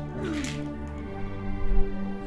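Film background score of held, sustained tones, with a short gliding vocal sound about half a second in and a low thump near the end.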